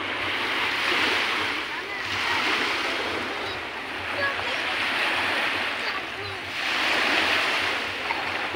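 Small waves lapping and washing onto a sandy beach, a hiss that swells and fades every two seconds or so.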